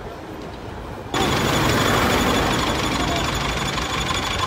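Faint street noise, then about a second in a sudden switch to a loud, steady rattling engine idle close by, most likely the minibus's diesel engine.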